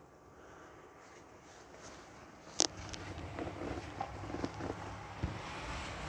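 Faint handling and movement noise: a low rumble that grows louder, one sharp click a little under halfway in, then a few soft knocks.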